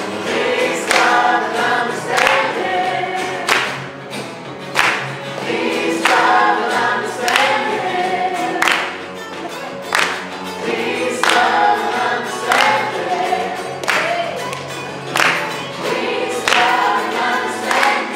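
A crowd singing a song together in chorus, with hands clapping along on the beat.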